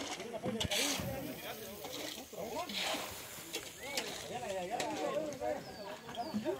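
Several people talking at once in the background, overlapping voices with no single speaker clear, and a few brief scrapes and knocks.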